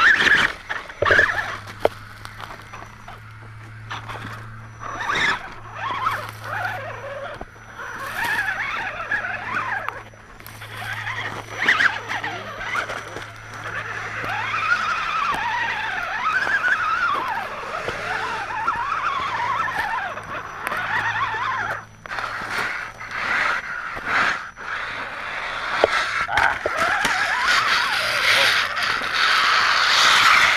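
Radio-controlled rock crawlers climbing rock: electric motor and gear whine rising and falling with the throttle over a steady low hum, with many clicks and knocks of tyres and chassis on the stone.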